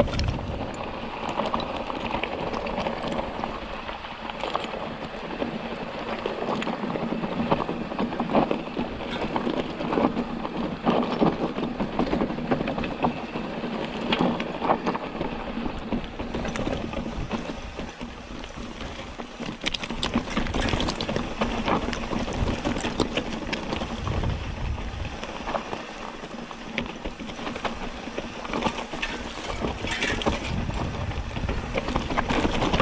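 Hardtail mountain bike riding a loose, rocky dirt trail: a continuous crunch of tyres on gravel and rock, with many small clicks and rattles from the bike.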